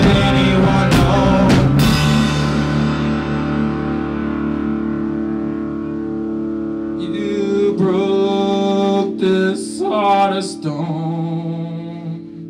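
Live rock band with electric guitars and drum kit: a few drum hits in the first two seconds, then the guitars ring out a long held chord. From about seven seconds in a voice sings wavering notes over the chord, and the sound dies down at the very end, as at a song's close.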